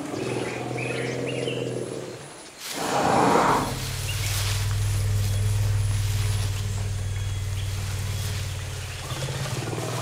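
Forest elephants vocalizing: low rumbles, a short loud roar about three seconds in, then a long, deep, steady rumble.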